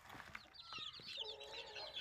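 Young chickens peeping: many short high chirps overlapping, with a lower drawn-out call near the end.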